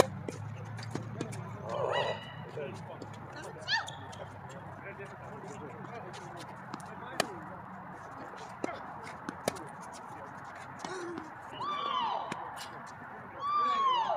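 Tennis balls being struck by racquets and bouncing on an outdoor hard court during a doubles rally: sharp pops spread through, the loudest about four and seven seconds in. Players call out briefly, above all near the end.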